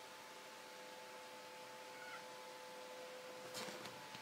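Domestic cat making a faint short call about halfway through, then a brief, louder, noisy cry near the end, over a steady electrical hum.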